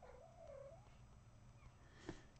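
A cat meows once, faintly: a single wavering call just under a second long, dropping in pitch at the start and then rising and falling.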